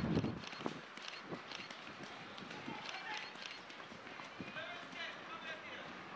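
Footfalls of several runners on grass passing close by, with a dull thump right at the start. Spectators' voices call out in the background from about halfway through.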